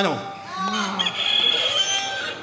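A novelty quiz buzzer playing a recorded rooster crow through a microphone: one crow ending on a long held note, as a contestant buzzes in to answer.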